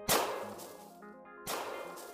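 Two sharp blasts about a second and a half apart, each dying away quickly, from a 12-gauge Remington 870 pump shotgun being fired at a target that bursts into a fireball. Background music runs underneath.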